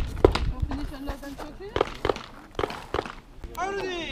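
People talking, with a few sharp cracks, the loudest about a quarter of a second in, over a low rumble.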